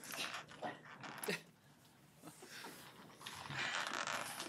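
Rustling and shuffling at a table: a few short bursts in the first second and a half, then a longer, steadier rustle through the second half, like paper and clothing being moved.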